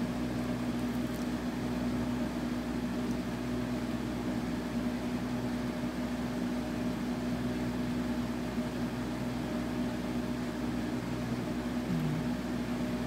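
A steady machine hum with a low droning tone, unchanging throughout.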